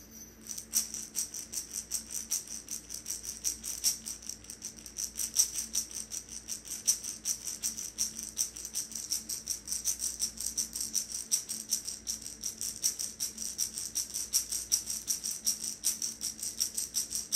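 A hand rattle shaken in a steady, even rhythm of about four strokes a second, the repetitive beat used for shamanic journeying, starting within the first second. A faint steady low hum runs underneath.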